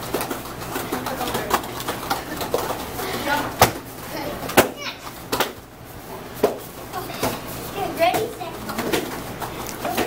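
Indistinct chatter of children's voices, broken by irregular sharp slaps of bare feet landing on the training mat as they run and jump the hurdles.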